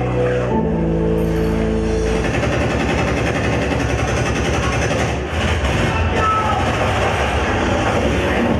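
A dance performance soundtrack over a sound system. Held music chords over a heavy low bass break off about two seconds in into a dense, rumbling noise effect that continues with the music.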